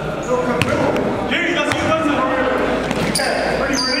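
A basketball bouncing a few times on a gym's hardwood floor, with players' voices echoing in the hall.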